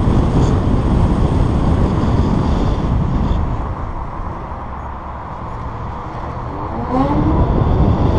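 Wind rushing over the microphone of a camera on a moving electric bike, with road rumble underneath. The noise eases off in the middle and swells again about seven seconds in, where a brief rising whine sounds as the bike picks up speed.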